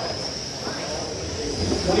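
Several 1/12-scale electric GT12 RC pan cars racing, their motors and gears making a steady high-pitched whine over a hiss, the pitch rising slightly.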